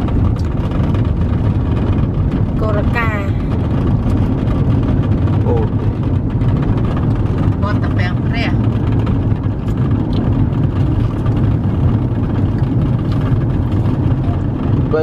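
Steady low rumble of a car's engine and road noise heard inside the cabin from the back seat. Short voices break in a few times, around three and eight seconds in.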